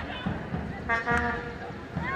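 A horn blown in one short, steady note about a second in, over shouting voices from the stadium.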